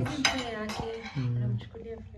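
Cutlery clinking against a plate: a few sharp clinks, mostly in the first second and again briefly near the end.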